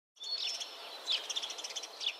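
Birds chirping and tweeting over a steady woodland background hiss, starting a moment in, with many short high chirps and a quick falling note about a second in.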